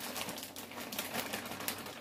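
Plastic bag of onion and pepper blend crinkling as it is handled and opened over the pan: a dense, irregular run of small crackles.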